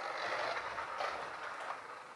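Toy remote-control car's small electric motor running and its wheels rolling as it is driven, a steady noisy whir that eases off slightly near the end.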